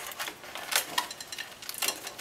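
Stiff clear plastic packaging being handled and pulled open, giving a run of small irregular clicks and crinkles.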